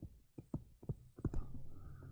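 Stylus tapping and clicking against a tablet screen while handwriting: several short, sharp clicks in the first second and a half. A faint low hum starts about midway.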